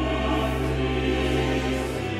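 Mixed choir and baroque orchestra performing a French Baroque grand motet, holding chords over a steady bass note that changes pitch at the very end.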